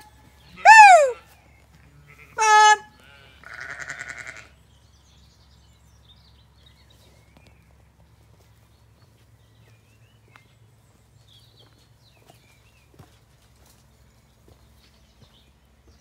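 A shepherd calling the flock with three loud, high-pitched calls in the first three seconds, the middle one falling in pitch, answered about four seconds in by a quieter, wavering bleat from a Zwartbles sheep.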